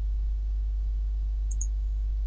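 Steady low electrical hum, with a computer mouse click about one and a half seconds in.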